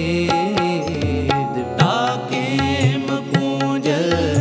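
Sikh Gurbani kirtan: harmoniums hold a sustained melody over steady tabla strokes. A male voice sings a line that bends up and down from about halfway through.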